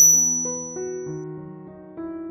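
Background music played on an electric piano, a melody of held notes stepping from one to the next. A high ringing tone sounds at the start and fades away over about a second.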